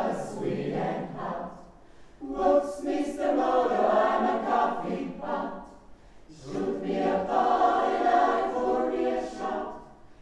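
Mixed choir of men and women singing a swing tune in harmony, a cappella. Three sung phrases with short breaks about two seconds in and about six seconds in.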